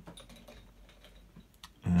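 A few faint, scattered clicks and taps of drawing tools being handled on a desk, with one sharper tick near the end, as pencil gives way to ink pen.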